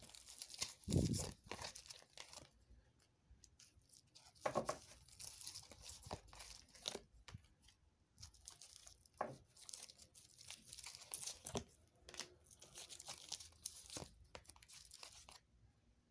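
Tarot cards being handled and laid out on a satin cloth: repeated bursts of card stock rustling and sliding, the loudest about a second in, stopping shortly before the end.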